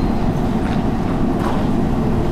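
Steady low rumble of background noise in a hall, heard through the open lectern microphone, with a couple of faint ticks.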